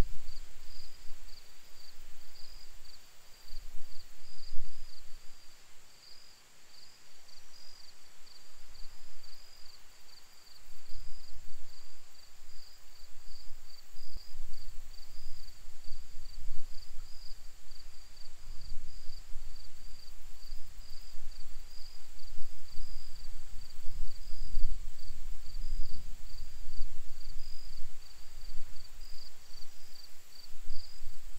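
Wind buffeting the microphone in uneven gusts, with insects chirping in a steady, evenly pulsing rhythm.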